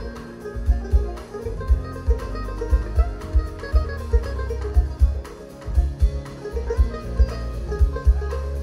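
A live band playing an instrumental passage: fast banjo picking over bass and drums with a steady beat.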